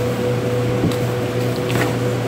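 Steady machine hum of shop cooling equipment, one low tone and one higher tone over a hiss. A few faint ticks and rustles of butcher's twine being pulled tight around a rolled beef roast, about a second in and again near the end.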